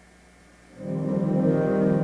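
Near quiet, then about three-quarters of a second in a Kurzweil PC88 stage keyboard comes in with a chord of several notes that holds steady: the opening of the song's introduction.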